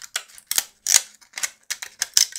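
Thin PLA 3D-printing brim being peeled off the edge of a printed part by hand: an irregular run of crackling clicks and small snaps as the brim tears away, with louder snaps about half a second and one second in. The brim separates cleanly.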